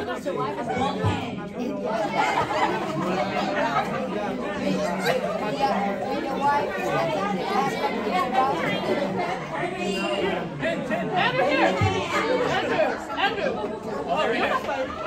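Crowd chatter: many people talking at once in a large hall, no single voice standing out.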